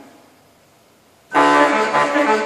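Pipe organ built by Joaquín Lois entering with a sudden loud full chord a little over a second in, after a quiet pause. It then holds rich sustained chords.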